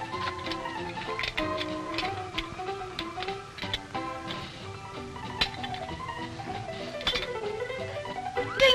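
Instrumental background music: a melody of short, clearly separated notes over a steady accompaniment.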